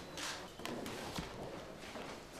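A few faint, sharp clicks and taps over low room noise.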